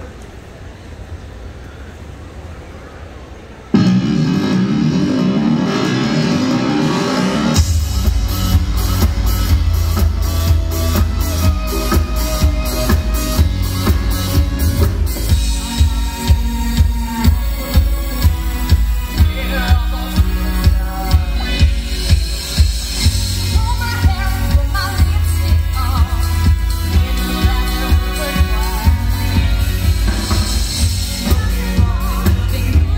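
A live band's music played loud through a stage PA, starting abruptly about four seconds in; a heavy, steady drum beat comes in a few seconds later and carries on.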